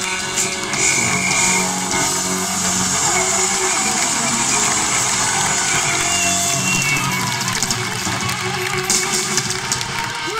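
A live rock band playing loudly, with electric guitars to the fore, recorded from among the audience in a large arena.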